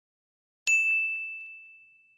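A single bright ding sound effect, struck about two-thirds of a second in and ringing out as it fades over about a second and a half: the notification-bell chime of a subscribe-button animation.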